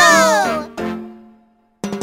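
Children's cartoon soundtrack: a short, high-pitched falling cry in the first half second, over a low held note that fades away. The music of the children's song starts near the end.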